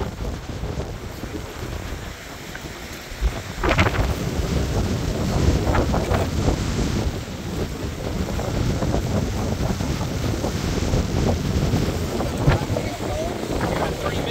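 Strong wind buffeting the microphone: a dense low rumble that gets louder about four seconds in, with a few brief sharp clicks.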